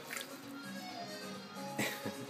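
Quiet background music with steady held notes, and a couple of brief handling noises from hands moving a raw turkey, one just after the start and one near the end.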